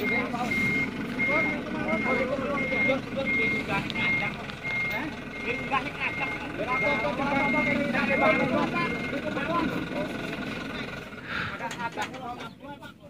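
A cargo truck's reversing alarm beeping on one steady tone at an even pace, a little under two beeps a second, as the truck backs up. The beeping stops about nine seconds in.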